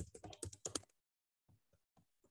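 Fast typing on a computer keyboard: a quick run of about ten keystrokes in the first second, then a few faint taps near the end.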